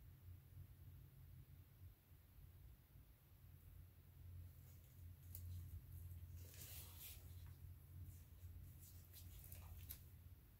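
Near silence with a low steady hum. From about halfway, faint scuffs and rustles of gloved hands lifting and tilting a wet painted canvas on the covered work table.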